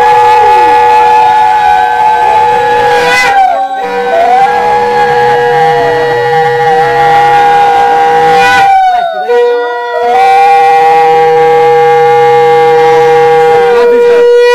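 Two conch shells (shankha) blown together in long steady notes at two different pitches, each breaking off for breath about three and a half seconds in and again near nine seconds before sounding on.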